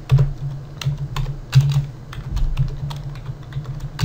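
Typing on a computer keyboard: an irregular run of key clicks as a short line of text is entered.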